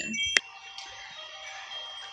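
A single sharp click about half a second in, then faint, steady, high ringing tones of wind chimes.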